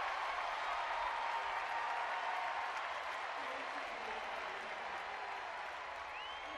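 Applause from a large ballpark crowd, loud at first and slowly fading.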